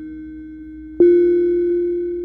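Ambient drone music from hardware synthesizers: sustained synth note hits over a steady low tone. A new, louder note is struck about a second in and slowly fades.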